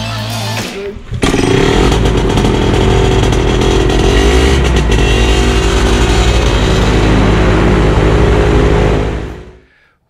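Paramotor engine running loud and steady behind a propeller, cutting in suddenly just after a second of music and fading out near the end.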